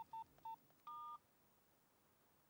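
Mobile phone keypad beeping as a number is dialled: three short key tones, then about a second in a longer two-note beep, after which it goes near silent.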